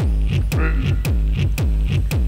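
Computer-generated electronic dance music with a heavy, distorted 'dirty kick' bass drum that drops in pitch on each stroke, about three beats a second.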